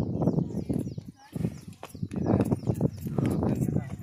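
Voices of a group of people talking and calling out, over a heavy low rumble in repeated irregular surges.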